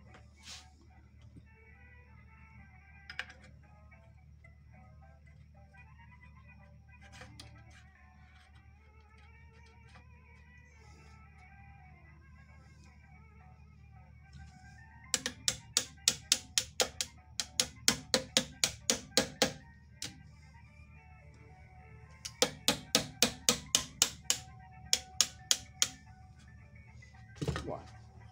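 Two runs of quick, sharp metallic clicks, about four or five a second, each lasting several seconds, from hand work on the needle bar of a stripped Singer 18-22 sewing machine head. Faint music and talk play underneath.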